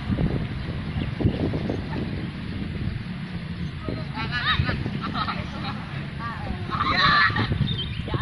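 Wind rumbling on the microphone, with distant high-pitched shouts from football players coming in from about halfway and loudest near the end.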